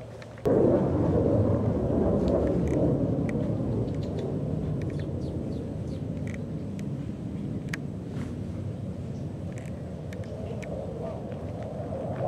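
Thunder: a low rumble breaks in suddenly about half a second in and rolls on, fading slowly over the next ten seconds. Faint short high ticks and chirps sound over it.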